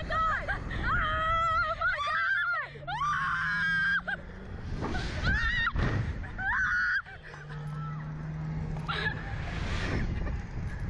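Two riders on a Slingshot reverse-bungee ride screaming and shrieking in high, wavering cries. Their cries are broken by a few short rushes of wind noise on the microphone as the capsule swings.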